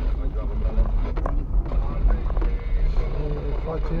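Steady low rumble of a car driving slowly, heard from inside the cabin, with voices or a radio over it.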